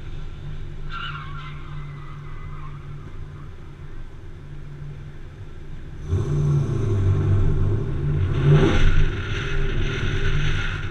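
Pontiac Trans Am's LT1 5.7-litre V8, breathing through long-tube headers and an aftermarket exhaust, runs quietly at first. About six seconds in it is suddenly revved hard as the car pulls away, with tyre squeal as it starts to slide; the loudest moment comes about two and a half seconds later.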